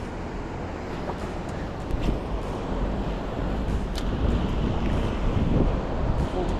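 Wind buffeting the microphone, a heavy low rumble over a steady rushing noise, growing louder about two seconds in.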